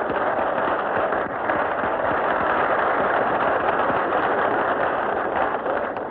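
Studio audience applauding, a dense steady clatter of clapping that dies away near the end, heard through a poor-quality 1930s radio recording with no high treble.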